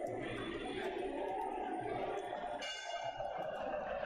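Muay Thai ringside music (sarama) over stadium crowd noise: a wavering reed melody with metallic ringing strikes of the ching cymbals, and a brief ringing tone about three seconds in.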